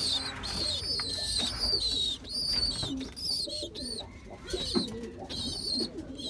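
Pigeons cooing in a loft, soft low calls coming now and then, with repeated high chirping calls from other birds throughout.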